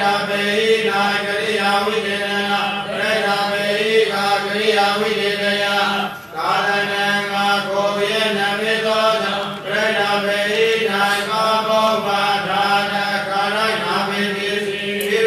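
A Buddhist monk's voice reciting scripture aloud in an even, chant-like cadence on a fairly level pitch, with short breaks about six and nine and a half seconds in.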